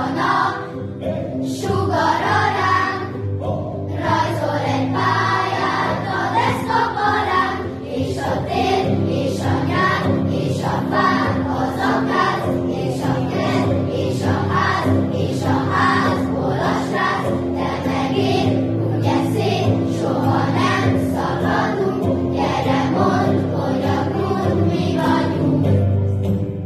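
Children's choir singing a song in Hungarian to an instrumental accompaniment with a steady beat.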